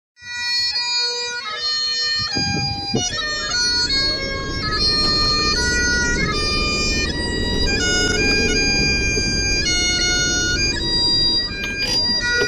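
Bagpipe music: a melody stepping from note to note over a steady drone.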